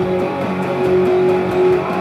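Electric guitar, a Gibson Les Paul through a Marshall MG30CFX amp, strumming steadily sustained distorted chords.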